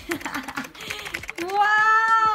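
A quick run of sharp clicks like keyboard typing, then, about three-quarters of the way through, a high voice starts holding one long steady note.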